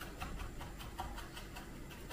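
Kitchen knife chopping fresh dill on a wooden chopping board: quick, even taps of the blade on the wood, about five a second.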